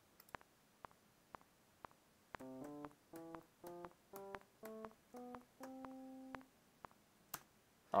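GarageBand's metronome ticking twice a second (120 bpm), then the Classic Electric Piano software instrument playing a short run of about eight brief notes that ends on one held note, with the metronome ticks going on around them.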